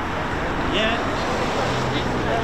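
Voices of people chatting close by over a steady low drone.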